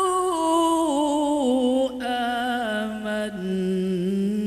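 A man reciting the Quran in Arabic in a slow, melodic chant. He draws out one long phrase that steps down in pitch, breaks briefly about two seconds in, then carries on with a lower held note.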